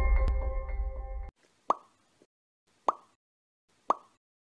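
Background music dies away and stops a little over a second in. Then come three short cartoon-style pop sound effects, each a quick rising blip, about a second apart, of the kind that mark outro icons popping onto the screen.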